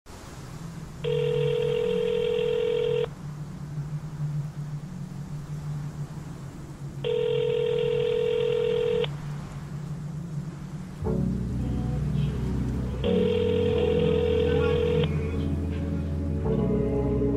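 Hip-hop song intro built on a telephone ringback tone: three steady two-second rings, six seconds apart, over a low music bed. A heavy bass beat comes in about eleven seconds in.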